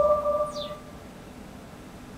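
Soundtrack of a Windows Azure promotional video ending: a held electronic chord with a short falling swoosh fades out within the first second, leaving quiet room tone.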